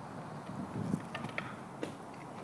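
Running footsteps of a pole vaulter's run-up on a rubber track, heard as soft thumps, followed by a few sharp clicks and short squeaks, with steady wind noise underneath.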